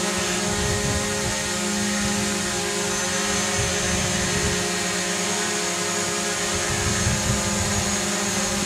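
Small folding-arm quadcopter drone hovering close by, its propellers giving a steady, many-toned buzz that holds level while the drone slowly turns in place.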